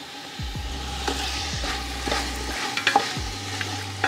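Chicken thigh pieces sizzling in oil in a hot stockpot as sliced andouille sausage is dropped in and mixed around, with a few light knocks.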